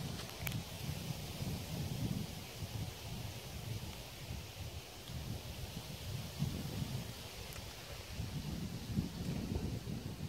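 Wind buffeting the microphone outdoors: an irregular, gusting low rumble with a faint airy hiss above it, and one brief click about half a second in.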